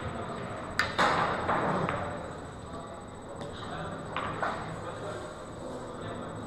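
Pool shot: the cue tip strikes the cue ball a little under a second in, followed at once by a louder clack of the cue ball hitting an object ball. Another click comes about a second later, and a few fainter ball clicks follow.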